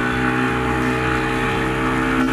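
Yamaha outboard motor running steadily at speed, an even engine drone over the rush of the wake and spray.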